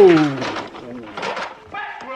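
A man's loud, drawn-out exclamation "oh!" that falls steeply in pitch, followed by quieter, rougher vocal sounds.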